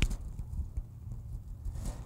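Soft, irregular knocks and crumbling of soil as gloved hands break Jerusalem artichoke tubers off a freshly dug root clump, over a low background rumble.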